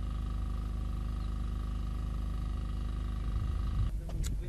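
An engine running steadily: a low drone with a fast, even pulse and a faint steady tone above it, cutting off abruptly just before the end.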